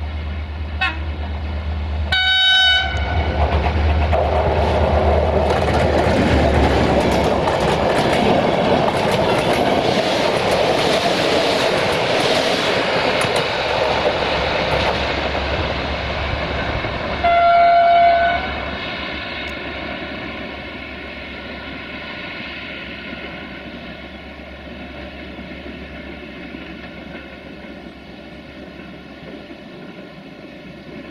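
Diesel-hauled passenger train leaving a tunnel and running past, its locomotive horn giving a short blast about two seconds in and another a little past halfway. Between the blasts come the engine's low rumble and the loud noise of the wheels on the rails as the coaches pass, all fading as the train draws away.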